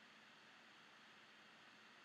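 Near silence: faint steady recording hiss.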